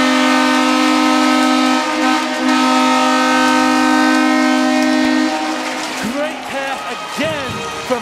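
Arena goal horn blowing one long, loud, steady note that signals a home-team goal, cutting off about five seconds in. The crowd then cheers and shouts.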